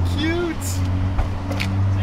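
A car's engine idling with a steady low hum, under a person's voice.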